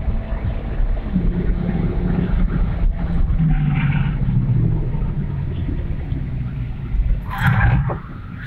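Mitsubishi Lancer Evolution X's 2-litre turbocharged four-cylinder engine driven hard on a race track, heard from inside the cabin over a steady low road rumble. Its pitch drops about three to four seconds in.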